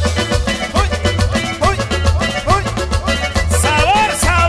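Live band playing an instrumental passage of a Latin dance tune, with no singing. A lead melody of sliding, swooping notes runs over a steady pulsing bass and drum beat.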